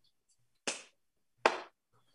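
Two brief taps about a second apart, with silence around them.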